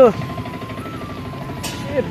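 Small auto-rickshaw engine running with a fast chugging beat, with a thin, slightly wavering high tone over it.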